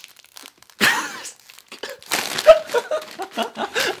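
A plastic snack bag of shrimp crackers crinkling and rustling in bursts as it is yanked at, while someone struggles to pull it open.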